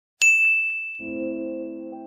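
A single bright, bell-like ding that strikes sharply and rings on as one high tone, slowly fading. About halfway through, a low, held music chord comes in under it.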